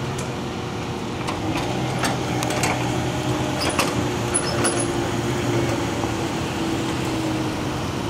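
2012 Volkswagen Beetle Turbo's engine running as the car creeps forward at low speed, a steady low hum. A few light clicks sound in the first half.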